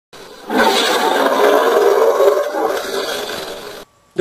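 Intro logo sound effect: a loud, dense rushing roar that starts about half a second in, slowly fades, and cuts off abruptly just before the end.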